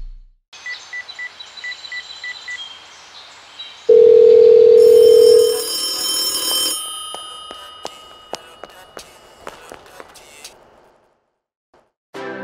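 Telephone sounds. First a run of six short, high beeps. Then, a few seconds in, a loud steady tone lasts about two seconds, overlapped by a high metallic ringing. The ringing dies away over several seconds with scattered clicks, fading out before the end.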